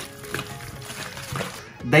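Soft background music, with faint wet scraping of a spoon stirring chicken hearts in sour cream in a stainless steel bowl.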